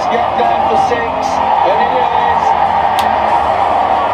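Cricket broadcast sound: a commentator's voice over the steady noise of a stadium crowd, with a sharp click about three seconds in.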